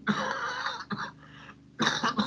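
A man clearing his throat: one long rasp, a short one about a second in, and another near the end.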